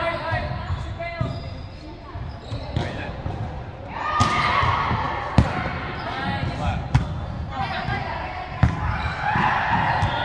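Volleyball being struck by hand during a rally in a large sports hall: three sharp smacks about a second and a half apart, over voices calling out.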